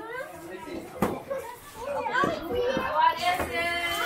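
Indistinct voices of children and adults talking and exclaiming, louder and higher in the second half, with a sharp tap about a second in.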